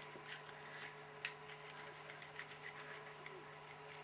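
Faint hand sounds of silicone putty being rolled and pressed into a ball between the palms, with a few small sticky clicks, over a steady low hum.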